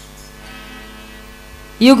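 Steady electrical mains hum from the sound system during a pause in speech. A woman's voice comes in near the end.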